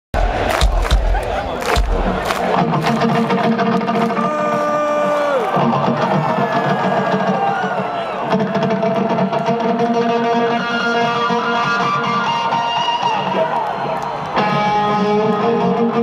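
Live electric guitar through a stadium PA, heard from inside the audience with the crowd cheering. A few heavy thumps come in the first two seconds. Then come held, bending guitar notes, with a long falling bend about five seconds in and a new held chord near the end.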